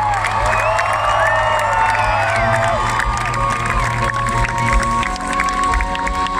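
Live rock band music with held chords over a steady low bass note, over an arena crowd cheering and shouting; the low note drops out about five seconds in.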